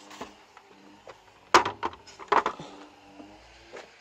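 Wooden boards of a folding stone box, joined by steel hinge brackets, knocking as the box is folded up and set down: two sharp knocks about a second and a half and two and a half seconds in, with a few lighter clicks.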